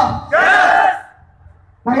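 A crowd of people shouting together in one short, loud cry lasting under a second.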